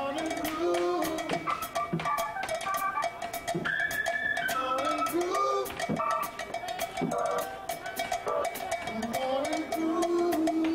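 Live funk band playing: a drum kit keeps a busy groove of rapid, regular cymbal strokes with snare and bass drum, under held notes from the band's pitched instruments.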